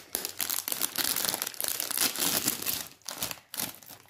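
Foil-lined plastic snack packet crinkling and tearing as it is pulled open by hand, a dense run of rustle with a brief lull about three seconds in.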